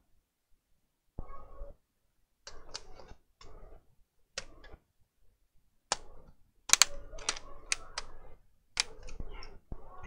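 Plastic bottom cover panel of a Dell XPS laptop being handled and pressed into place: scattered clicks and snaps with short scraping rustles, the sharpest clicks bunched in the second half.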